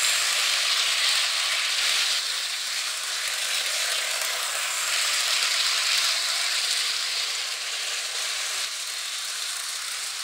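Hornby Blue Rapier (class 395 Javelin) model train running at speed on its track: a steady high whirring hiss from the motor and the wheels on the rails, swelling a little as it passes close by and easing slightly near the end.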